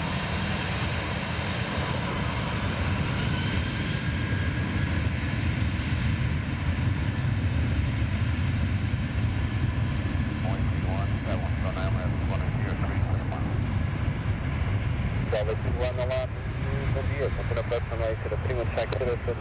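Jet airliner engines running loud and steady at close range, a continuous low-heavy noise with no break. Voices come in over it about ten seconds in and again near the end.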